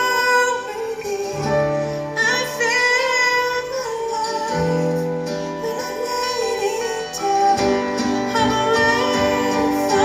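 Live acoustic music: a woman singing a slow melody into a microphone over two acoustic guitars.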